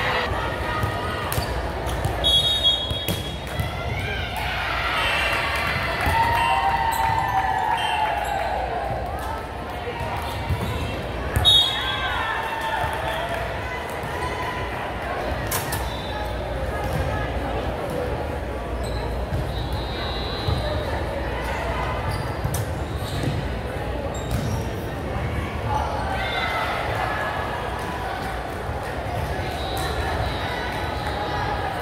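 Busy gymnasium during volleyball play: scattered ball hits and bounces on the hardwood floor and voices calling out, echoing in the large hall over a steady low rumble. One sharper hit stands out near the middle.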